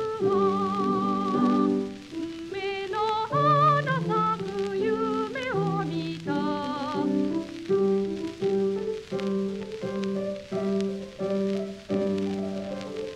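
A woman singing a Japanese children's song with vibrato over piano accompaniment; about seven seconds in the voice stops and the piano carries on alone with evenly paced notes.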